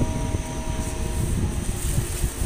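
Steady low rumbling noise at a kitchen stove while sweet potato leaves are stir-fried in a steel wok.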